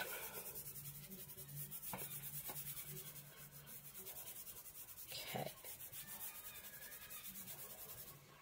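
Fingers and palm rubbing lightly over the back of a paper laser print laid on an acrylic-inked gel printing plate: a faint, even swishing in quick strokes, pressing the print into the paint for an image transfer.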